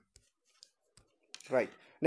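A few faint, isolated clicks, about four spread over a second and a half, followed by a man saying 'right'.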